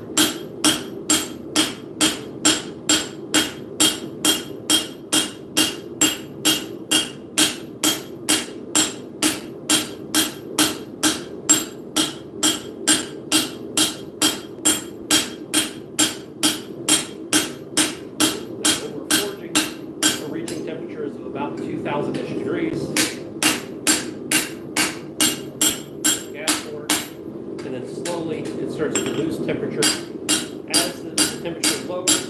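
Blacksmith's cross-peen hammer striking hot steel on an anvil, about two blows a second, each with a bright metallic ring. The strikes stop twice for a couple of seconds, about two-thirds of the way through and near the end, leaving a steady low rushing underneath.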